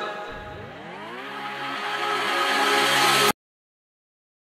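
A low pitched drone with several overtones glides upward over about a second as the song ends, then holds steady and cuts off abruptly a little past three seconds in.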